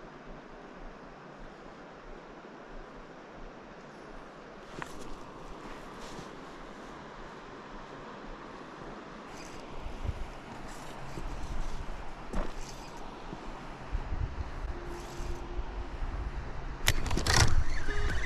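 River current and wind rumbling on the body-worn microphone, with a few light clicks from handling the rod and spinning reel. The wind rumble grows from the middle on, and a loud scuffing jolt of gear against the microphone comes near the end as a fish strikes.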